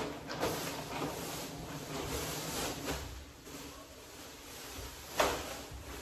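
Household handling noises: rustling as something like a bag or cloth bundle is moved, with a sharp knock at the start and a louder knock about five seconds in.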